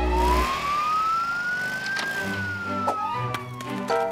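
Cartoon police siren sound effect: one slow wail that rises for about two seconds and falls back. There is a low thump as it starts, and light music underneath.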